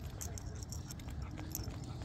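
A small dog walking on a leash over a concrete sidewalk: light, irregular clicks and jingles of steps and leash hardware over a steady low rumble.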